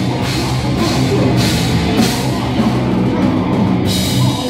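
Hardcore band playing live: distorted electric guitars and bass holding low notes over a drum kit with repeated cymbal crashes.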